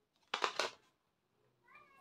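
Plastic packaging of a kajal pencil being torn open by hand: one short, loud crinkling rip about half a second in. Near the end comes a quieter, short, high-pitched voiced sound.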